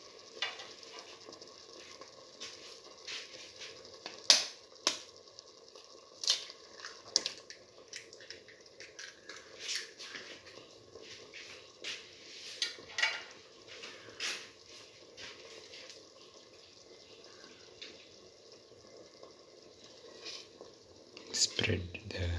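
Split pigeon pea stew simmering in a pan with two eggs in it, giving scattered soft pops and clicks every second or so, the sharpest about four seconds in.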